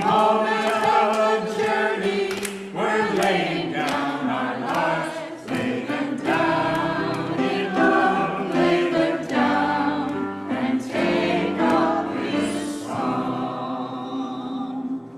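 Church congregation singing a hymn together.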